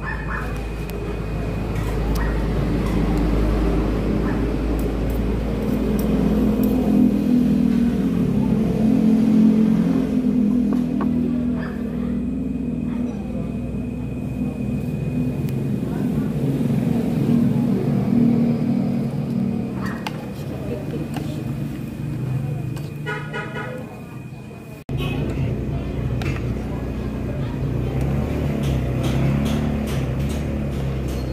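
Continuous vehicle engine and traffic noise with voices and some music behind it. Near the end a short pulsing pitched sound, like a horn toot, is heard, and the sound cuts off and restarts abruptly.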